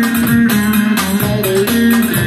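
Long-necked saz (bağlama) played with rapid, evenly spaced plectrum strokes, carrying a Turkish folk melody.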